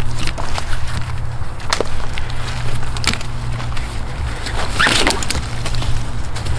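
A few light clicks and knocks as a rope and its metal rigging hardware are handled, over a steady low rumble.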